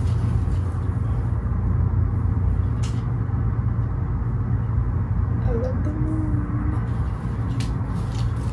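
Steady low hum and rumble under an even hiss, with a few faint clicks and soft rustles.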